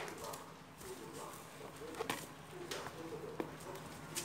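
Light handling noise from an aluminium gearbox casing being turned over by hand, with a few sharp clicks and knocks, the clearest about two seconds in.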